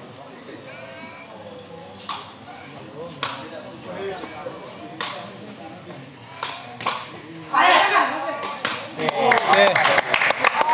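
A sepak takraw ball being kicked in a rally: sharp smacks, one every second or so, six in all. About three-quarters of the way in, the crowd bursts into loud shouting, followed by quick clapping and voices at the end.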